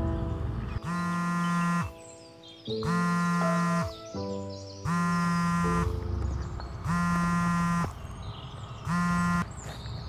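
Mobile phone ringing with a musical ringtone: a held, pitched ring about a second long repeating every two seconds, five times.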